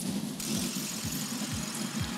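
Athletes running on curved, non-motorised slat-belt treadmills: the belts run steadily under a regular beat of footfall thuds, a few a second.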